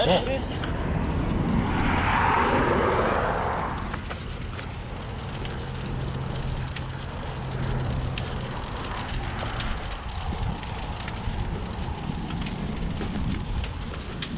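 Roadside highway ambience with wind and traffic noise; a vehicle passes, swelling and fading between about one and four seconds in, and a low steady hum follows for a few seconds.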